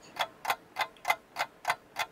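Steady run of sharp, evenly spaced ticks, about three a second.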